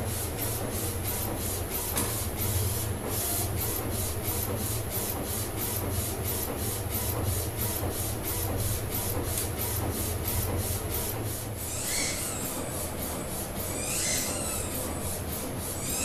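Direct-to-garment inkjet printer's print head carriage shuttling back and forth as it lays down the white ink underbase, with rapid regular ticking about four times a second over a steady low motor hum. Near the end, short whines come every two seconds or so.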